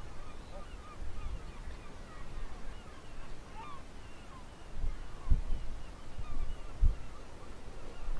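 A flock of seabirds calls over and over in many short calls. Wind rumbles on the microphone underneath, with two stronger gusts in the second half.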